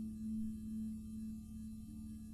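Concert harp's last low note ringing on after a piece ends, slowly fading with a slight waver in loudness.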